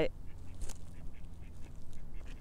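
Low wind rumble on the microphone with faint, short bird calls in the background.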